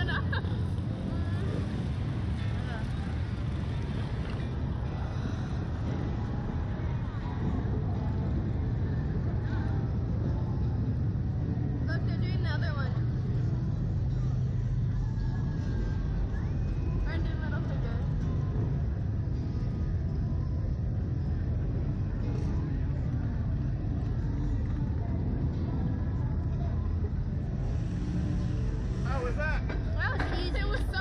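Steady low rumble of wind buffeting the SlingShot ride's onboard camera microphone as the capsule swings, with the riders' voices breaking through briefly a few times.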